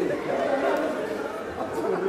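Several people talking at once: overlapping chatter in a large room.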